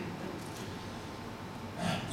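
Low steady hiss on a headset microphone, with a short, sharp intake of breath close to the mic near the end.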